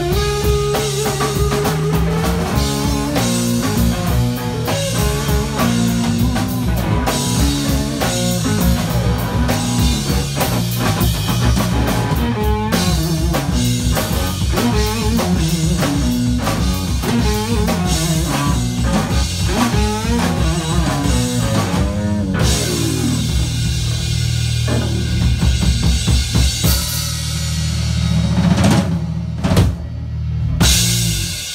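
Live band of electric guitar, electric bass and drum kit playing a steady, busy beat. About three-quarters of the way through the drumming drops away and a low chord rings on, with a flurry of drum hits near the end.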